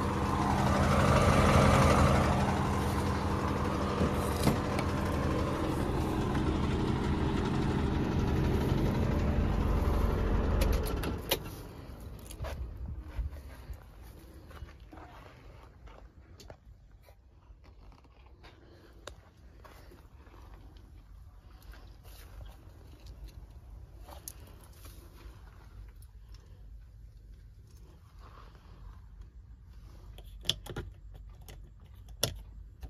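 Nissan X-Trail's engine running steadily at idle. About eleven seconds in, after a click, it drops away sharply to a quiet car interior with faint scattered clicks and handling noises.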